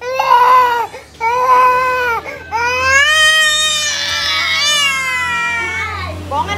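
A toddler crying: two short wails, then a long drawn-out wail that falls in pitch near the end.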